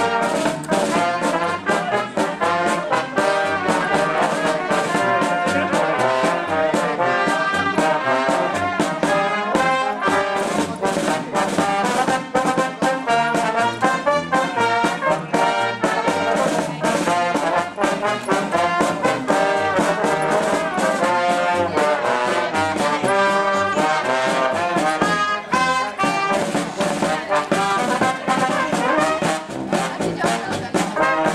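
A brass band with trombones playing a lively tune with a steady beat, continuously.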